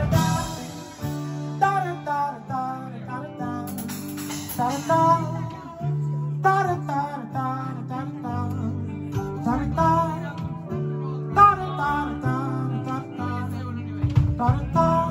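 Live band playing a quieter instrumental stretch of the song: strummed and plucked acoustic guitars over a bass guitar that moves between held low notes, with a higher melody of sliding notes on top.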